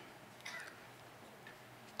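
A pause between a man's spoken phrases: quiet room tone through a lectern microphone, with one faint short sound about half a second in.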